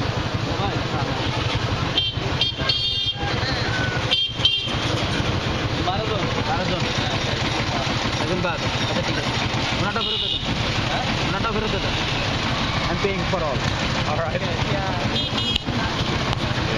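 Steady motor-traffic drone with several short vehicle-horn toots, about two to four seconds in and again near the end, over background voices.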